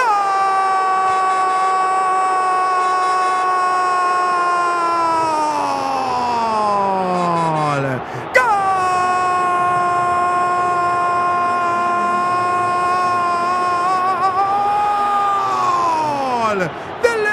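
A football commentator's long goal cry on one held vowel, sung out at a high, steady pitch in two long breaths of about eight seconds each. Each breath falls away in pitch as it ends, with a short break about eight seconds in.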